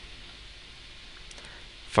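Low steady hiss of room tone with a few faint computer-keyboard clicks about a second and a half in.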